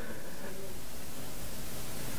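Steady, even hiss of background noise, with no other sound standing out.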